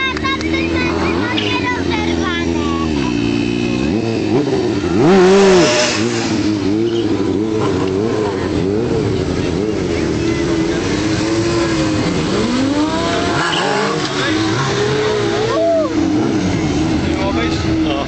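Stunt motorcycle engine revving up and down over and over as the rider performs, with a louder surge of revs about five seconds in.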